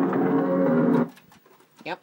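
Audio of a PAL VHS tape playing through a TV: a loud, drawn-out low pitched drone that cuts off suddenly about a second in, while the picture breaks up into tracking noise. A brief rising squeak follows near the end.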